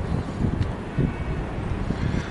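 Wind buffeting the microphone, an uneven low rumble with a couple of brief gusts, over faint outdoor town background.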